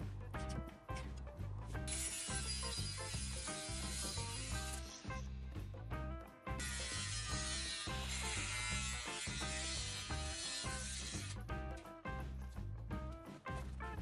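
Cordless Makita angle grinder cutting through square steel tube, in two stretches of a few seconds each with a short break between, under background music with a steady beat.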